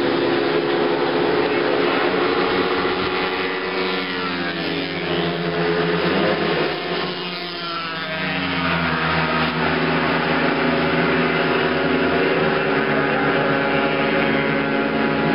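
Motorcycle engines on a race track: a loud, steady engine drone, with bikes passing about four to seven seconds in, their pitch sweeping as they go by.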